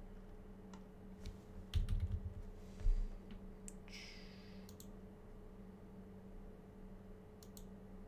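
Computer keyboard and mouse being used: scattered single key presses and clicks, with a few louder ones about two and three seconds in, over a steady low hum.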